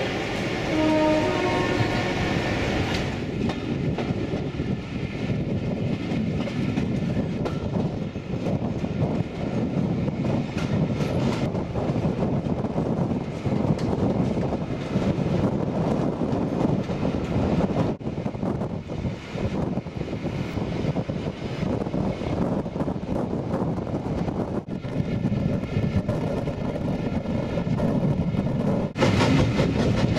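A train heard from inside its own carriage at an open window, hauled by an LMS Black Five two-cylinder 4-6-0 steam locomotive. The locomotive's exhaust and the coaches' wheels on the track run as a dense, steady rumble. The sound jumps abruptly at a few points.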